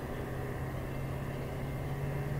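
Diesel freight locomotives running down the line, a steady low hum over a background rumble.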